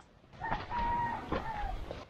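A rooster crowing once: a long held call lasting about a second and a half that drops in pitch at the end.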